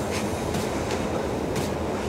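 Steady low rumbling background hum, with a couple of soft rustles as a fabric jacket on a hanger is handled.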